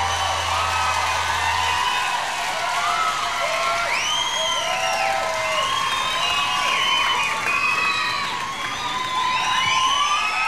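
Concert audience cheering and screaming, many high voices rising and falling over one another. Under it, a low steady drone cuts off about two seconds in.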